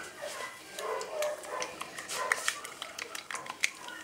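A young dog making faint whimpering sounds while its infected wound is rinsed, among soft handling clicks and rustles.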